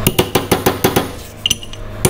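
Ball-peen hammer tapping a flat steel bar to drive a new oil seal into a Subaru EJ253 engine's aluminium oil pump housing. About seven quick, ringing metal-on-metal taps come in the first second, then a short pause, and the tapping starts again at the end. The seal is being seated after being started by thumb pressure.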